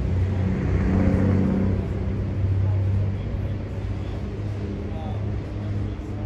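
A motor vehicle engine running steadily nearby, a low hum that swells for a second or so shortly after the start.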